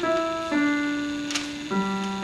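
Upright piano played slowly: three notes in turn, each lower than the last, the middle one held for over a second. A brief click sounds over the held note.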